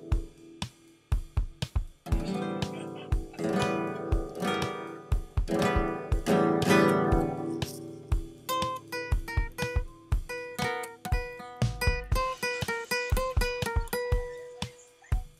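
Instrumental acoustic guitar: strummed chords for the first half, changing about eight seconds in to single picked notes, with regular sharp percussive knocks keeping the beat.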